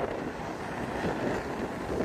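Wind buffeting the microphone, with the steady wash of breaking surf behind it.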